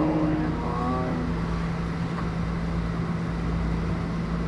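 A steady low hum with a rumbling noise beneath it, with a few brief voice-like sounds in the first second or so.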